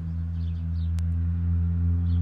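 A steady low hum with a few faint higher overtones, growing slightly louder, and a single sharp click about a second in.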